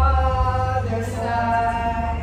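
A voice chanting in long held notes that glide from one pitch to the next, over a low steady hum.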